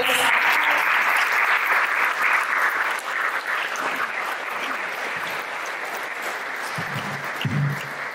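Audience applauding. The clapping is loudest for the first few seconds, then gradually tapers off.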